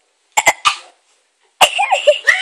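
Three quick coughs from a girl with a mouthful of marshmallows, about half a second in, then a girl's voice breaks in loudly near the end.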